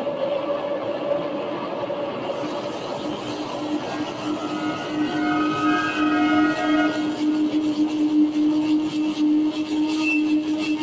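Improvised electronic drone music from guitar and effects pedals: layered sustained tones, with a low steady tone swelling in from about three seconds in and holding, and higher tones entering in the middle, over a grainy noise layer that grows crackly near the end.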